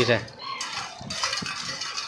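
A spoon stirring and scraping round the bottom of a steel pot of water, dissolving sugar: a continuous rapid scraping with small metallic clicks.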